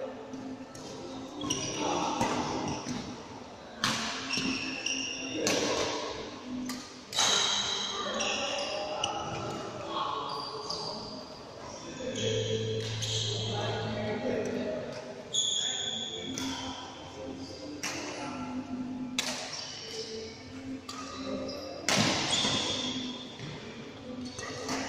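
Badminton rackets striking a shuttlecock at irregular intervals during rallies, with short shoe squeaks on the court floor and people talking, echoing in a large hall.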